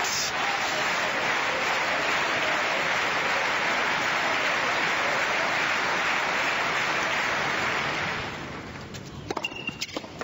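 Tennis crowd applauding steadily, dying away about eight seconds in, followed by a few sharp knocks.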